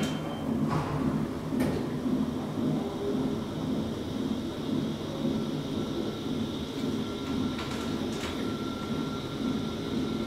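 An ASEA traction elevator, modernised by Otis, travelling upward, heard from inside the car: a steady ride rumble with a few clicks at the start and a thin steady whine that comes in a few seconds later.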